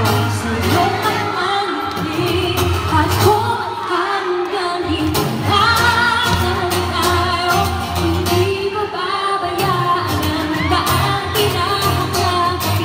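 A woman singing a pop song live into a handheld microphone over an amplified backing track with a bass line and beat, echoing in a large indoor hall.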